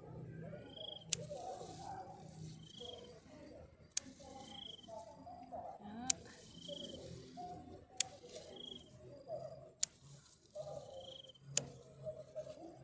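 Small hand scissors snipping through water spinach stems, a sharp click about every two seconds, six cuts in all.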